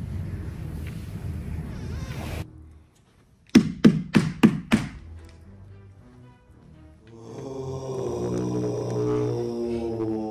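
Five quick, loud knocks on a window, about four a second, a little over three seconds in: a hand rapping on the glass to wake someone sleeping outside. From about seven seconds, low eerie background music swells in.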